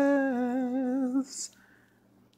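A man's voice holding one sung, hummed note with a slow vibrato for about a second, ending in a brief hiss. Then quiet.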